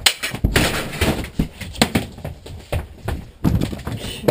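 Two people scuffling: a rapid, irregular run of thumps and knocks as bodies hit each other, the furniture and the floor.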